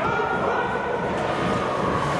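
Ice hockey rink ambience during play: indistinct voices of players and spectators echoing in the arena over a steady background wash.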